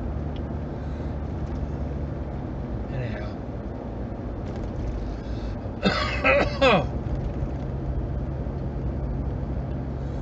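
Steady low hum of a car's engine and tyres heard from inside the cabin while driving. About six seconds in, a man makes a short, loud throaty sound whose pitch falls away, the loudest thing here.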